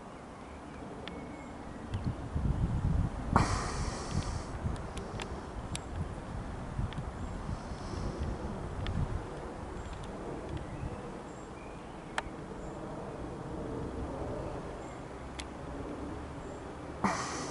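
Low rumble of an Airbus A320 airliner passing high overhead on descent, mixed with unsteady wind buffeting on the microphone that swells a couple of seconds in. A brief rustle of handling noise sounds about three seconds in, with a few faint clicks.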